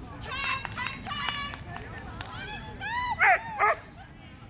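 Bouvier des Flandres barking repeatedly while running an agility course, with two loudest barks near the end.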